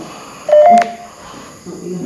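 A short, loud two-tone electronic beep about half a second in, a lower tone stepping up to a slightly higher one, followed near the end by a man's voice.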